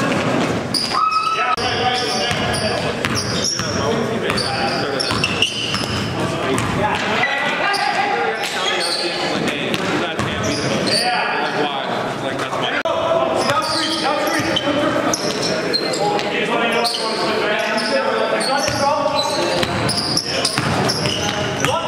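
Live game sound in a gymnasium: a basketball bouncing on the court floor amid indistinct shouting and talking from players, echoing in the large hall.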